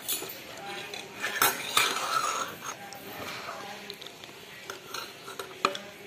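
Metal spoon scraping and clinking against a metal bowl as the last of the pasta is scooped up, with a few sharp clinks, loudest about a second and a half in.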